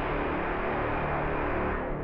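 Orchestral brass 'mega horns' from a sample library playing a cinematic 'braam': one long, steady, dense low blast with deep bass.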